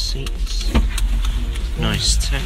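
Steady low road and engine rumble inside a moving car's cabin, with indistinct voices talking over it.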